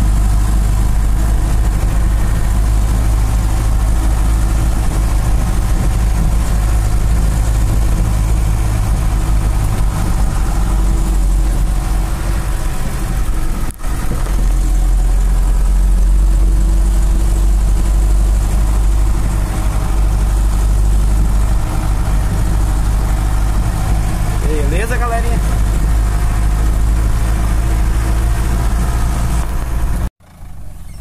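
A truck's engine running steadily as it drives along a dirt road, heard from inside the cab as a loud, constant low drone with a brief break about fourteen seconds in. A short wavering high sound comes in about twenty-five seconds in.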